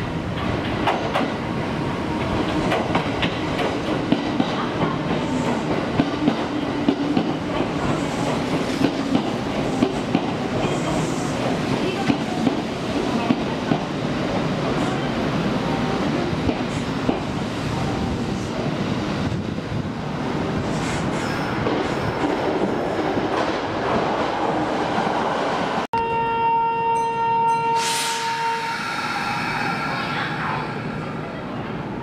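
Kintetsu 5209 series electric train rolling slowly into a station platform, its wheels clacking over rail joints about once a second over a steady running rumble. Near the end, after a cut, a steady electronic tone sounds for about three seconds, followed by a short hiss.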